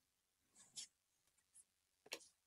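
Near silence, with one brief, faint scrape of a trading card sliding against another in the hand a little under a second in.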